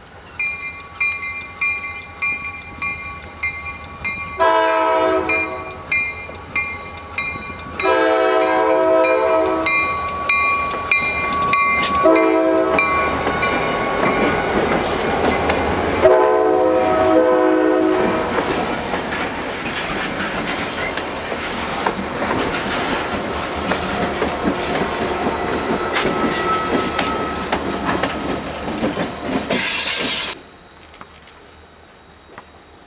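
A bell rings about twice a second as Pennsylvania Northeastern diesel freight locomotives approach. The lead locomotive's horn then sounds the grade-crossing signal: long, long, short, long. The locomotives and train pass close by with loud engine and rail noise, which cuts off suddenly at the end.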